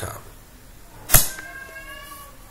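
A single sharp computer-keyboard key click about a second in, as the typed web address is submitted, followed by a faint, thin, slightly rising tone held for under a second.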